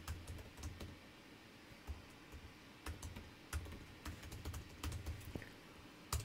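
Faint typing on a computer keyboard: short key clicks in irregular bursts as a sentence is typed.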